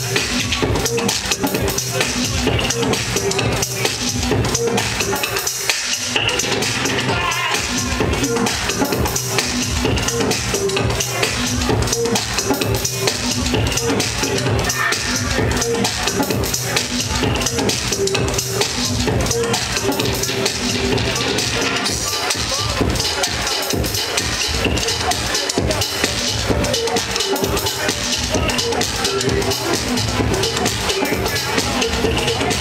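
Electronic dance music from a live DJ set, played loud over the sound system with a steady kick-drum beat. The bass briefly drops out about six seconds in, then the beat comes back.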